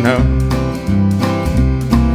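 Honky-tonk country song: a male singer ends a line just at the start, then the band plays on between lines, with guitar to the fore.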